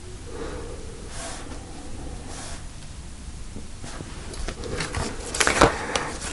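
Tarot cards being gathered up off a cloth-covered table by hand: soft slides and rustles, then a few sharp clicks of cards knocking together near the end.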